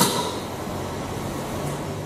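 A sharp click, then a steady mechanical whir from a small salvaged 12-volt DC motor driving the prong that presses the dispenser's plastic valve.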